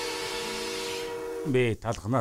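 A cartoon train's steam hiss with a held whistle tone, steady until about a second and a half in. Then a voice breaks in with repeated wavering "oh" sounds.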